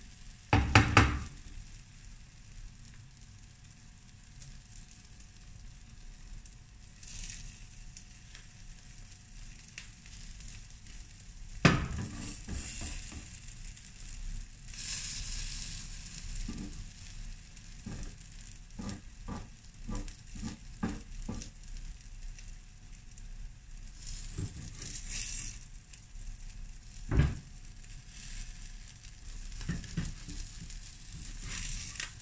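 Egg batter sizzling on a hot flat griddle (tawa), with a slotted spatula knocking and scraping against the pan: a cluster of knocks about a second in, a single sharp knock before halfway, a run of quick light taps past the middle, and another knock near the end.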